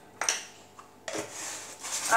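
Handling a plastic salt container: one sharp click shortly after the start, then about a second of rubbing and scraping as its lid is fitted back on.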